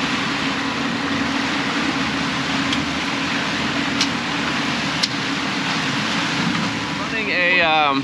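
Twin outboard motors running steadily at trolling speed, a constant low drone over the rush of the wake and wind. Two short sharp clicks sound about four and five seconds in.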